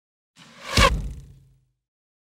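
Logo ident sound effect: a whoosh that swells over about half a second into a deep low hit, then dies away by about a second and a half in.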